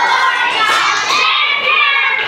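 A room full of young children shouting and cheering together, many high voices overlapping at once.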